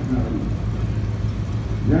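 Early-1950s GMC cab-over truck's engine running at low speed as the truck rolls slowly by, a low steady hum over a rumble.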